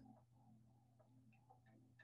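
Near silence: room tone with a faint low hum and a few faint ticks.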